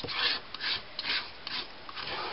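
Metal palette knife scraping set hot wax off the desk surface, in four short rasping strokes about two a second.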